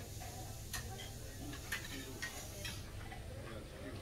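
Buffet dining-room background: a steady low hum with four light, sharp clicks spread through it, typical of serving tongs and dishes being handled.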